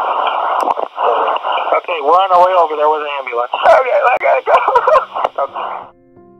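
A recorded emergency phone call with the narrow, tinny sound of a phone line: a man sobbing and crying out in distress, with one long quavering wail in the middle. It cuts off just before the end.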